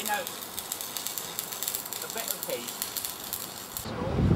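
Electric arc welding on steel miniature-railway rail: a steady crackling sizzle of the arc that cuts off just before the end.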